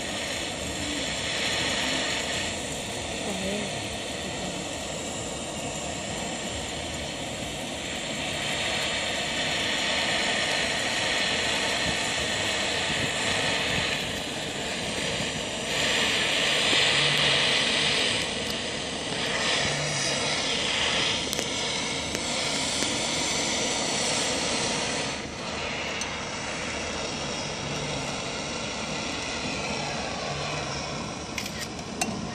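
Handheld butane torch flame hissing steadily under the glass bulb of a siphon coffee maker, heating the water so that it rises into the upper chamber. The hiss swells and eases several times and is loudest a little past the middle.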